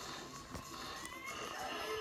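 Audio of Toon Disney logo ident videos playing from a computer's speakers: a busy mix of effects, with a sharp click about half a second in and a short rising squeal near the middle.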